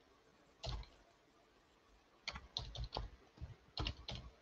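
Faint computer keyboard typing in short bursts: a single keystroke about a second in, a quick run of keystrokes between two and three seconds, and a few more near the end.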